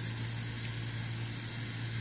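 Steady hiss of a small gas torch flame playing on a square tool-steel bar, heating it red hot so it can be twisted into a decorative pattern.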